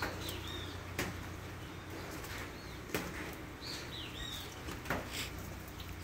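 Birds chirping faintly a few times in short gliding notes over a steady low background hiss, with three sharp clicks about two seconds apart.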